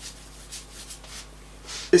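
Soft rubbing of a damp paintbrush stroking glaze across a paper-collaged art surface: a few faint brush strokes.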